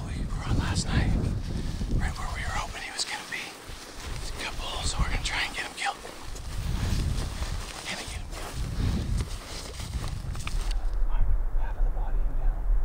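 Hushed, whispered talk between hunters, with wind gusting on the microphone; the wind rumble grows heavier near the end.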